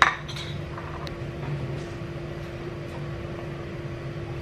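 A metal spoon clinking against a ceramic bowl while food is spooned out: one sharp clink right at the start, then a few lighter taps. A steady low hum runs underneath.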